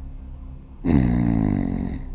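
A sudden loud roar-like sound about a second in, falling in pitch and cutting off abruptly after about a second.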